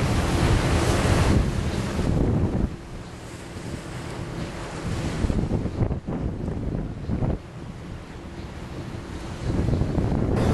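Wind buffeting the microphone and water rushing along the hull of a boat under way, a steady noise with no tones. It is loud for the first two and a half seconds, drops sharply, swells briefly a few times, and comes back up near the end.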